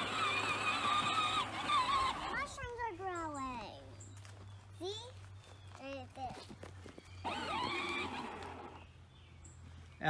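A young child's high voice: a long held sound, then a quick run of falling squeals like laughter, and more short squeals later. A low steady hum runs underneath.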